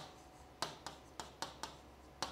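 Pen writing on a large touchscreen display: faint, sharp ticks as the pen strikes and lifts off the screen, about six in two seconds at uneven spacing.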